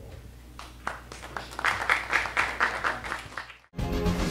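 An audience applauding, the clapping building up about half a second in and cut off abruptly near the end, just before music starts.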